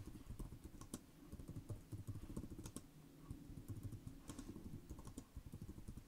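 Computer keyboard typing: a quick, irregular run of faint keystrokes as a sentence is typed, with a brief lull about halfway through.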